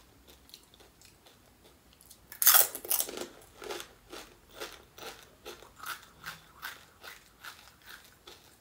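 A crisp panipuri shell, filled with spicy water, crunching loudly as it is bitten whole about two and a half seconds in, followed by wet chewing crunches about two a second.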